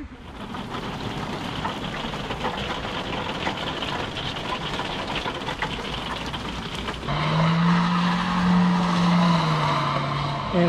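Rain pattering on a caravan's roof and window, heard from inside. About seven seconds in, a louder car engine outside joins with a steady droning pitch.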